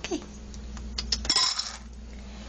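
Dry cat kibble poured from a scoop into a cat bowl: a few scattered clicks, then a rattling rush of pellets landing about a second and a half in.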